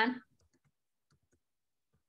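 Faint keystrokes on a computer keyboard: a few scattered, irregular clicks as a short string of digits is typed.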